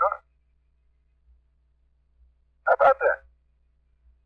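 Radio-relayed voice from the lunar surface: a short spoken exclamation about three seconds in, after a pause in which only a faint steady low hum from the transmission is heard.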